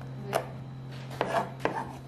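Kitchen knife chopping red chilies on a wooden cutting board: one stroke about a third of a second in, then three quick strokes close together in the second half.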